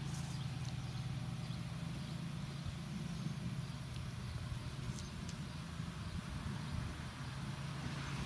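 A steady low mechanical hum, with a couple of faint clicks about five seconds in.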